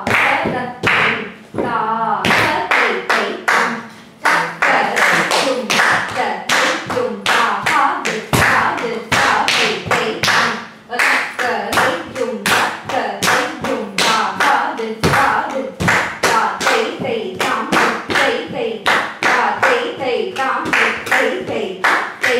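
Rapid rhythmic recitation of Bharatanatyam sollukattu syllables, continuous through the passage, over a quick run of sharp percussive slaps in time. The slaps come from bare feet stamping on a tiled floor.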